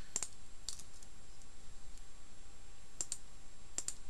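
A few separate, sharp clicks of computer keys and a mouse, spaced unevenly over a faint steady hiss: two near the start, a close pair about three seconds in, and one more near the end.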